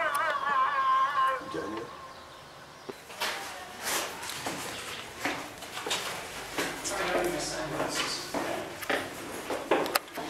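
A man's voice chanting a wavering, ornamented call to prayer, which ends about a second and a half in. From about three seconds in come scattered knocks and clicks with faint voices in a stone stairway.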